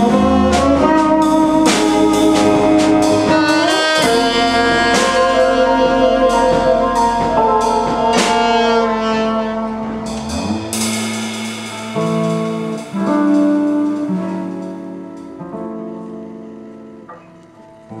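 Live jazz band of saxophone, electric guitar, electric bass and drum kit, with busy drumming and cymbal strokes under the horn line. About ten seconds in the drums stop, and the final chords are held and fade out as the tune ends.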